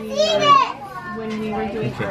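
Young child's voice: a high-pitched, pitch-bending vocal sound in the first second, then softer child chatter.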